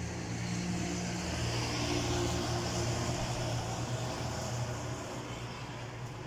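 A steady low mechanical hum with a hiss over it, swelling about two seconds in and easing off toward the end.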